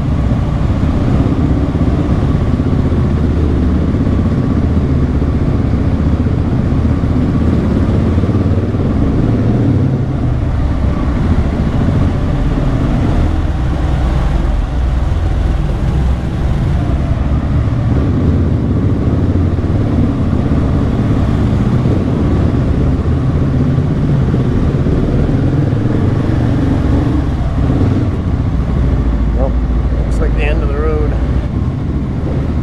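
Adventure motorcycles' engines running steadily at low speed, heard from the rider's own bike with another bike just ahead, inside a rock-walled tunnel.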